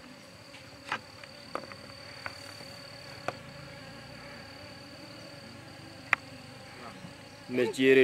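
Insects buzzing in the open, with a steady high-pitched whine throughout and a few faint ticks. A man's voice begins near the end.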